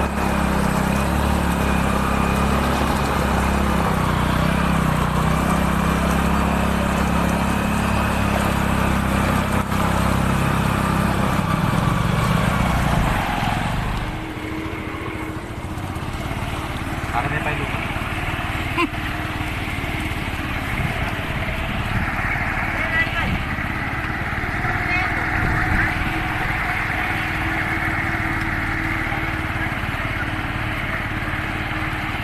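Motorcycle engine running steadily while wading through deep floodwater, with the water nearly up to the spark plug and the exhaust under water. About halfway through, the engine's low sound drops away and it turns quieter.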